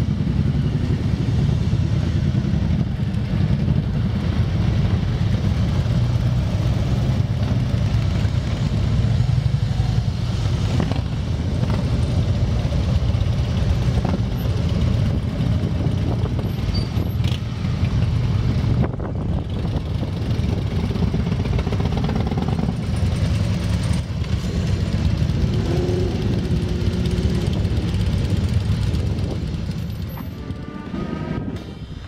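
A line of motorcycles, among them Harley-Davidson V-twin touring bikes, riding slowly past at low engine speed: several engines running together in a steady low sound.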